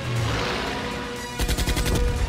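A rushing whoosh at the start, then a fast volley of gunfire about one and a half seconds in, with many shots in quick succession, over orchestral music.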